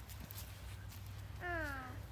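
A short wordless vocal sound from a person, falling in pitch, about one and a half seconds in, over faint outdoor background noise.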